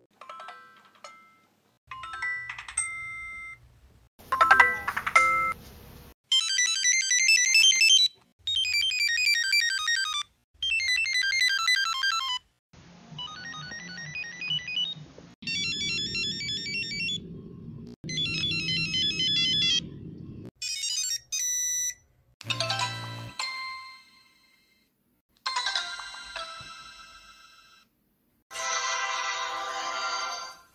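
A run of short Motorola mobile phone startup jingles, several electronic melodic tunes played one after another with brief pauses between them. They include the startup tune of the Motorola V3 and E398 and a low-tuned startup tune used on the Motorola C116.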